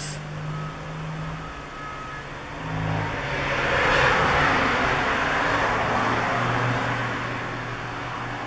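Road traffic through an open door: a vehicle passing, its noise swelling to the loudest point about four seconds in and then slowly fading, with a low engine drone underneath.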